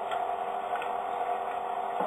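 Steady background hum with hiss, broken by a couple of faint ticks.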